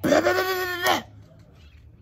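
A man's voice holding one long wordless high note for about a second, near the start, with a slight wobble in pitch.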